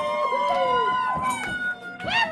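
High sung 'ooh' notes from a live rock band's vocalists, held long and sliding down in pitch, over the band playing.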